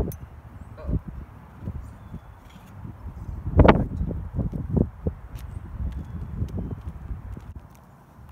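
Knocks and clunks of a seat post being worked loose and pulled out of a BMX race bike's frame, the loudest about three and a half seconds in.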